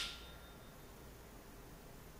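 The ring of a small tap-style dinner bell dying away within the first second, two steady tones fading out. Faint room tone follows.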